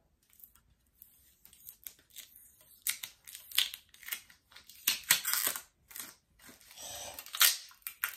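Sticky packing tape being peeled and pulled off an item by hand, in a series of short, irregular rips, the louder ones in the second half.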